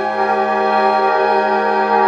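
School concert band playing a sustained held chord in the woodwinds, with new notes entering at the start.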